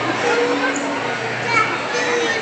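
Overlapping chatter of children and adults, a steady murmur of many voices with no single voice standing out.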